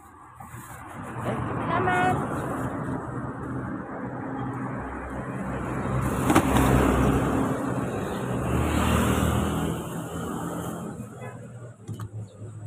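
A motor vehicle on the street passing close by: engine and tyre noise build up over about two seconds, hold for several seconds, then fade away near the end.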